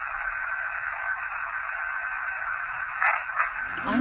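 A handheld digital voice recorder playing back through its small speaker: a steady thin hiss with a faint whine. About three seconds in there is a brief faint sound, which is presented as a spirit voice answering 'angry'.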